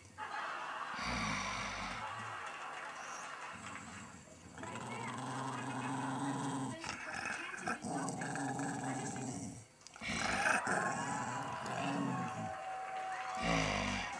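A dog growling in low, drawn-out stretches of a second or two each, with short pauses between, the grumpy growling of a dog just woken up.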